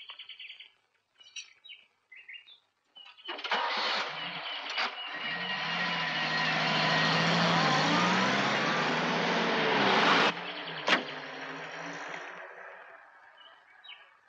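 An open jeep's engine starts about three seconds in and revs as the jeep pulls away, then drops off sharply and fades into the distance as it drives off. Birds chirp before the engine starts.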